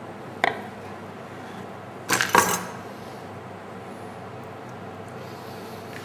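Tableware clinking: one sharp click about half a second in, then a quick cluster of clinks a little after two seconds, as food is laid out on a serving plate.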